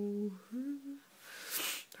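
A woman's hesitant closed-mouth hum: a held 'mmm' on one steady pitch that ends just after the start, then a short rising 'hm', then a quick breath shortly before she speaks again.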